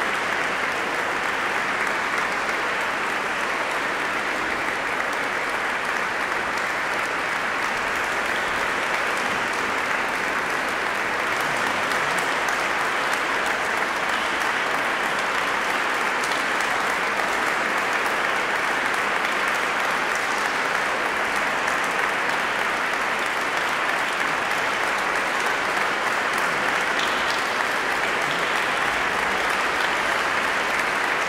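Large audience applauding steadily in a reverberant cathedral, a dense unbroken clapping.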